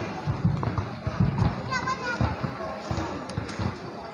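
Indistinct background voices of people in the park, with a high-pitched voice calling out about two seconds in, over irregular low thuds.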